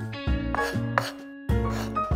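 Small kitchen knife chopping diced meat on a miniature wooden cutting board, a few light knife taps against the wood, over background music.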